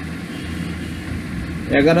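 Steady low background hum during a pause in a man's speech; his speech resumes near the end.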